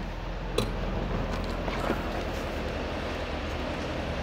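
2011 Chevrolet Corvette's 6.2-litre LS3 V8 idling, a steady low hum heard from inside the cabin, with a single short click about half a second in.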